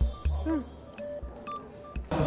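Light electronic background music: short beeps and a pitch blip that bends up and back down about half a second in.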